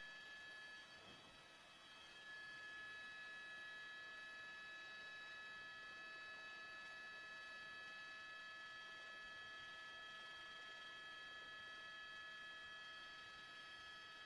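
Near silence: a faint steady hiss with several steady high-pitched tones, like an open audio line.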